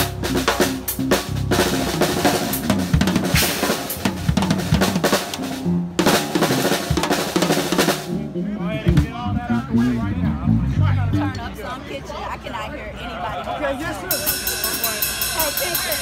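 Acoustic drum kit being played: fast snare, bass-drum and cymbal strokes for about the first eight seconds. Then the playing turns lighter under voices, and a cymbal wash comes near the end.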